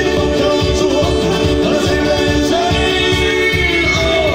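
Loud amplified band music with a singer, a steady drum beat under the sung melody, played through an outdoor festival sound system.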